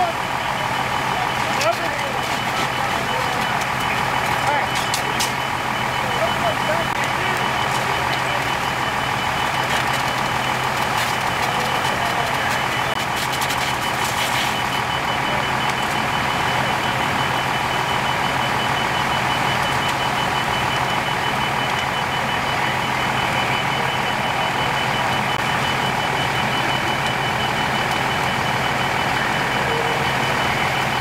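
Fire truck diesel engine running steadily, with a high-pitched warning alarm beeping rapidly and without a break over it. A few brief sharp crackles come in the first half.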